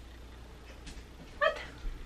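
A woman's single short, high-pitched exclamation, "what?", about one and a half seconds in, over quiet room tone.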